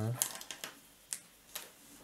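A short spoken "huh?", then four sharp clicks about half a second apart: a pen being handled against the desk and paper as the drawing pen is changed and set to the page.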